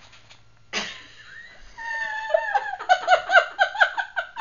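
A woman's sudden gasp, then a high-pitched squeal that breaks into rapid giggling, about three to four bursts a second.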